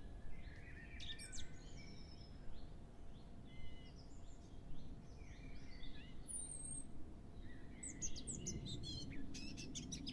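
Birds chirping and calling, many short rising and falling chirps scattered through, with a busier flurry near the end, over a faint low background hiss.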